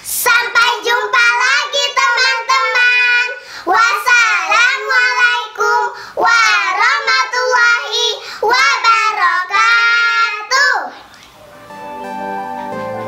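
Young girls singing a short song together in high, childish voices, the singing stopping about eleven seconds in. Soft instrumental music begins near the end.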